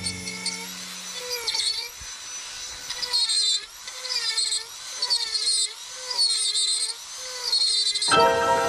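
High-speed handheld rotary carving tool whining as its bit grinds into wood, the pitch dipping and recovering about once a second as the cut loads it.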